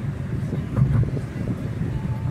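Steady low road and engine rumble inside a small car's cabin while driving on asphalt.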